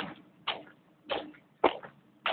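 Footsteps on a dirt and concrete surface: a steady walking pace of about two steps a second, each a short scuffing thud.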